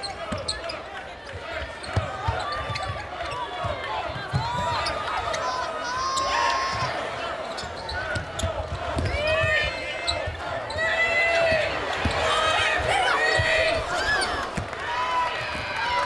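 Basketball being dribbled on a hardwood court, with the short, repeated squeaks of sneakers on the floor and a steady murmur from the arena.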